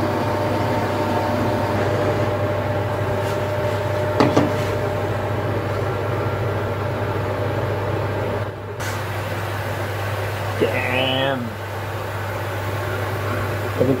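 A handheld gas torch's flame hissing steadily as it heats the catalyst tube, over a constant low hum. There is one sharp click about four seconds in.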